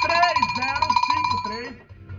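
Electronic telephone ringer: a high, rapidly warbling ring that runs for about a second and a half and then stops, with a man's voice under it.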